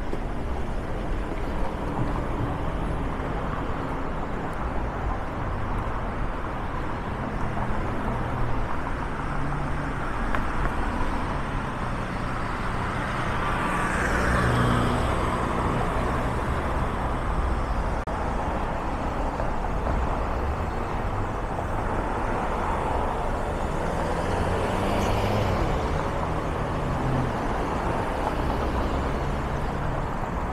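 Street traffic: a steady road hum, with one vehicle passing close by about halfway through and another a few seconds before the end.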